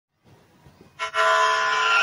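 A loud, steady horn-like tone, rich in overtones, starts suddenly about a second in and holds at one pitch.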